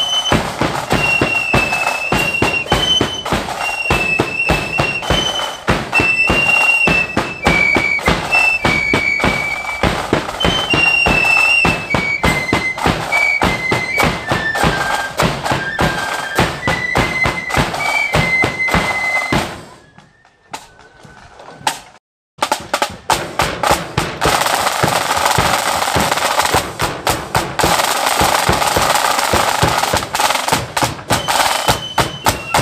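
Marching flute band playing a tune in unison over side and bass drums. The tune stops about two-thirds of the way through, and after a brief break only the drums play on.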